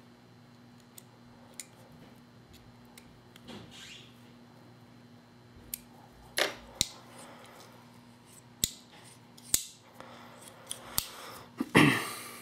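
Small clicks, taps and a brief scrape of hard plastic and metal parts being handled on a workbench: a paintball marker's grip frame and its macro line fitting. Louder sharp clicks come a few at a time in the second half, over a faint steady hum.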